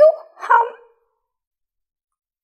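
A woman's voice in a high, expressive character voice, its pitch swooping up and down, over the first second.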